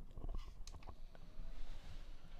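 Faint, scattered clicks and taps from a hand handling a small battery-powered USB clip fan while pressing its button to switch it on.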